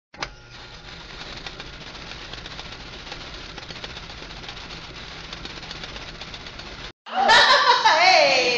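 A short click, then a steady hiss with no tone in it that cuts off sharply after about seven seconds. Near the end, voices and laughter come in loudly.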